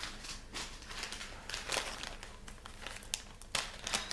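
A small plastic bag of diamond-painting drills being handled and opened, with the plastic crinkling unevenly and a few sharp clicks.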